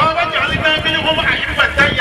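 People's voices talking without a break.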